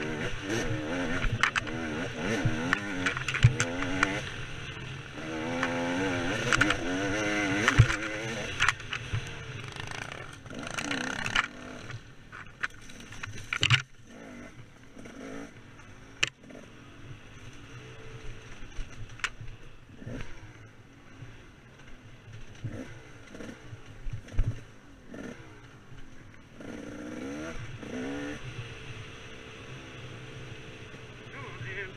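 KTM 300 two-stroke dirt bike engine revving hard up and down over rough forest trail, loudest for the first third and then mostly at lower throttle with short blips. Sharp knocks from the bike hitting ruts and rocks are scattered throughout.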